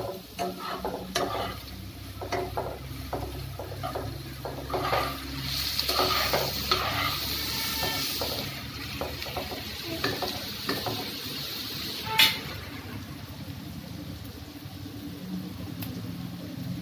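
Sliced onions, green chillies and curry leaves sizzling in oil in a non-stick kadai, stirred with a spatula that scrapes and clicks against the pan; the sizzle is strongest between about five and eight seconds in. One sharp knock about twelve seconds in.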